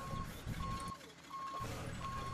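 Backup alarm of a boat-yard truck towing a hydraulic boat trailer, beeping a single steady tone about once every 0.7 seconds.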